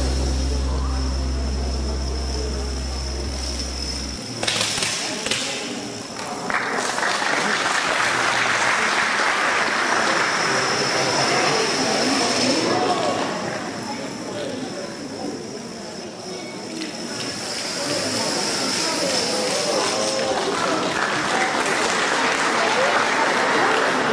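Background music that stops about four seconds in, followed by indistinct voices in a large hall.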